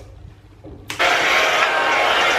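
Hand-held hair dryer blowing close by: a steady rushing noise with a faint motor whine, starting abruptly about halfway through after a short quiet stretch.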